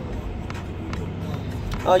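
Low, steady rumble of a car heard from inside the cabin, with a light click about half a second in. A woman's voice begins near the end.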